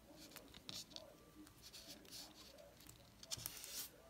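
Faint scratchy rustling of rubber loom bands being pulled through and worked along a metal loom hook: a few short scrapes, then a longer one near the end.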